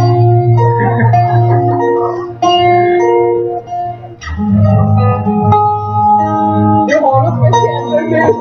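A man singing long held notes into a microphone while playing an acoustic guitar, with a short break about halfway through.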